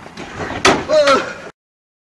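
A single loud slam about two-thirds of a second in, followed by a brief vocal cry. The sound then cuts off suddenly to dead silence.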